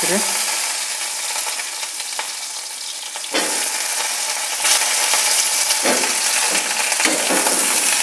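Cauliflower florets sizzling as they fry in hot oil in an aluminium kadai, stirred with a metal spatula. The sizzle grows louder about three seconds in.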